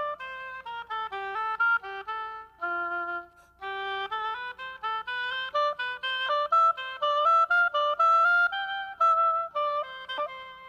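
Solo oboe playing a melody in separate stepwise notes, pausing briefly before the second phrase, which moves faster and climbs higher and louder.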